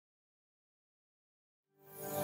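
Dead silence, then background music fading in just before the end.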